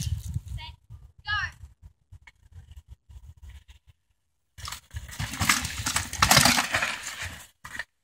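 Child's 24-inch-wheel mountain bike coming down a rocky trail: tyres bumping over rock ledges with knocks and rattles, and a brief high squeal about a second in. It gets loudest as the bike rolls close past in the second half, rattling over the rough ground.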